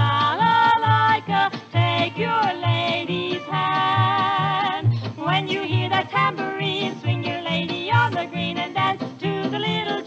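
Instrumental stretch of a 1951 polka record: a small band plays an up-tempo polka melody over a steady bass pulse on the beat.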